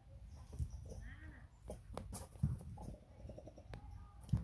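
Young long-tailed macaques making soft, short squeaks and calls, with a few sharp clicks and light thumps from their movement.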